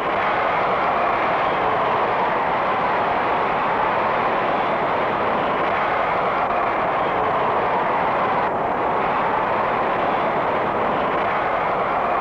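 A large convention-hall crowd cheering and applauding in one dense, continuous wall of noise that starts suddenly and stays level: an ovation greeting the acceptance of the presidential nomination.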